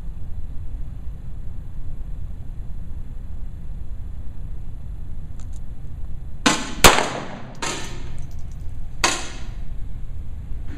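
Several pistol shots on an indoor range over about three seconds, starting about six and a half seconds in. The sharpest and loudest comes near the seven-second mark, and each shot trails off in a short echo. A steady low rumble runs underneath.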